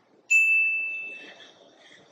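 A single ding sound effect: one clear, bell-like high tone that starts sharply about a third of a second in and fades away over about a second and a half. It marks the on-screen stare counter going up by one.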